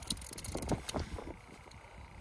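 Hand-over-hand handling of fishing line at an ice hole: a few short clicks and rustles in the first second, then quieter handling noise.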